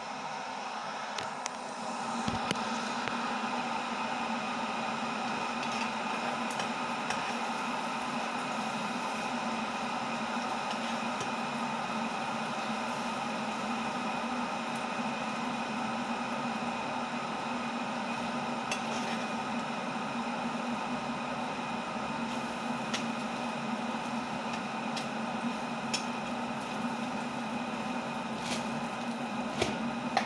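Egg cooking in a pot with a steady sizzling hiss over a constant mechanical hum; the sound grows louder about two seconds in. A few light clicks of a metal fork stirring against the pot.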